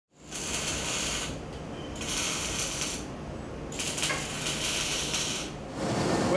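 Robotic welder arc welding in three crackling, hissing runs of about a second each, with short pauses between, over a steady low shop hum.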